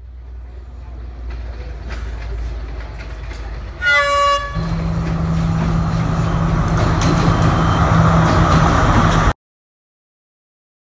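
Diesel passenger train pulling into a station, its rumble building steadily. Its horn sounds once, briefly, about four seconds in. The engine's steady drone and wheel noise then pass close by, growing louder, until the sound cuts off abruptly near the end.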